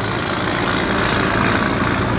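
A Volvo FH semi-truck hauling a grain bitrem passes close by, its heavy diesel engine running loud in a steady roar.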